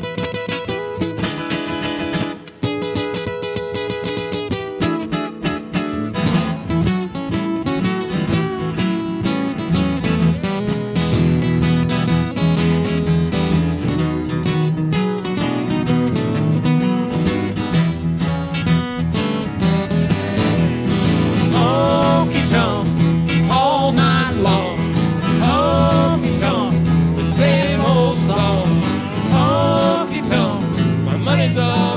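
Live country band playing an instrumental break in a honky-tonk song: strummed acoustic guitars under a lead line whose notes bend and slide in pitch through the second half.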